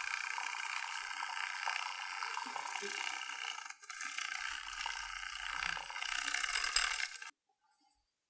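Matcha being whisked in a tea bowl with a bamboo chasen: a steady, frothy scratching that cuts off abruptly about seven seconds in.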